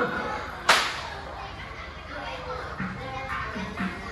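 A single sharp, loud crack about three-quarters of a second in, over children's voices.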